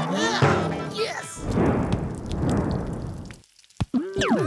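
Cartoon soundtrack: a character's drawn-out vocal cry in the first second, then about two seconds of grainy rushing noise with background music, dropping to a brief near-silence with a single click near the end.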